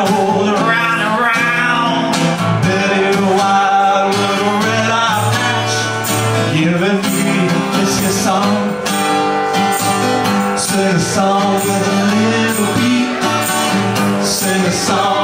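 A small live acoustic band playing a song: an acoustic guitar strummed under a man singing, with a tambourine shaken in time.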